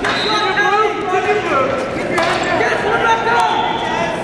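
Several voices calling out over one another in a large hall around a wrestling mat, with a sharp knock about two seconds in.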